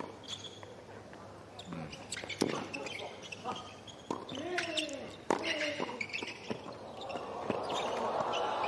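Tennis ball struck by racquets and bouncing on a hard court during a doubles rally: sharp pops at irregular intervals. A short vocal cry rises and falls about four seconds in, with a briefer one soon after.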